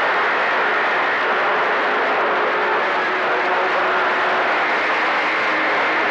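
Steady hiss of CB radio static through an open-squelch receiver between transmissions, with faint steady whistle tones mixed in. The band noise is typical of weak, long-distance skip conditions.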